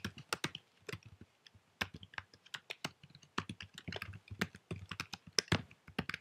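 Typing on a computer keyboard: irregular key clicks, some in quick runs, with short pauses between.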